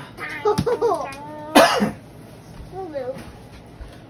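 A person coughs once, loudly, about a second and a half in, amid short voice sounds that carry no words.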